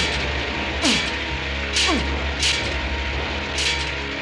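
A hand tool scraping against metal cage bars in five short strokes about a second apart, over background music with a low drone and falling tones.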